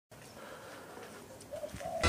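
Faint outdoor background with a bird cooing twice in the last half second, low dove-like calls.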